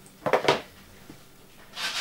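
Hand-held sponge rubbing: two short, scratchy rubs, one just after the start and one near the end.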